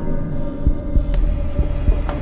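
Horror-film sound design: a low droning hum with a few heavy low thumps like a heartbeat, and a brief sharp hiss about halfway through.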